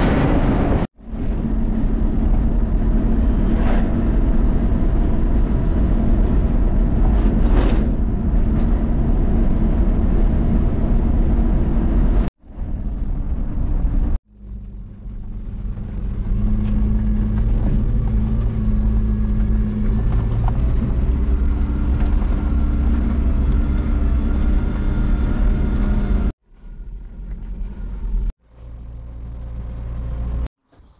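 Pickup truck driving, heard from inside the cab: a steady engine drone with road and tyre rumble. The sound breaks off abruptly several times and resumes.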